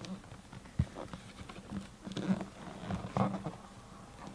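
A cardboard box being handled and turned by hand: irregular rubbing and tapping on the cardboard, with soft knocks just before a second in and again two and three seconds in.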